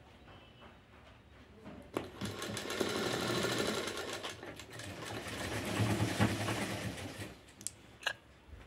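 Sewing machine stitching a sleeve onto a blouse: it starts about two seconds in, runs steadily for about five seconds, then stops. A sharp click or two near the end.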